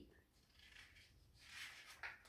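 Near silence, with a faint rustle of a picture book's paper page being handled and turned in the second half.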